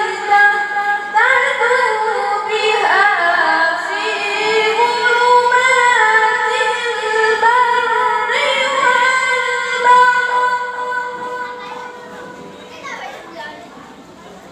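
A young woman's melodic Qur'an recitation (tilawah) into a microphone: long held, ornamented phrases that glide up and down in pitch, fading out about eleven seconds in.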